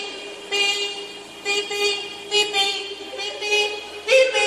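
Car horn honking in a regular, even rhythm, about one steady-pitched blast a second, like a car alarm going off.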